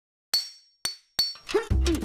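Metal stepladder clinking as it is set down: three sharp metallic clinks in quick succession, the first ringing briefly. A short voice and music come in near the end.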